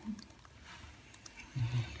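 Mostly quiet room with faint small clicks, then a brief low murmur from a voice near the end.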